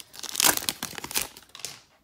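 Hockey card pack's wrapper being torn open and crinkled by hand, with a loud crackle about half a second in and smaller crinkles that die away.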